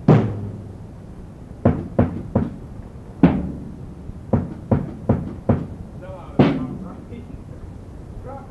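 A series of about ten sharp knocks, irregularly spaced, each ringing briefly.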